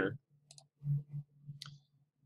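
Two computer mouse clicks about a second apart, over a steady low hum.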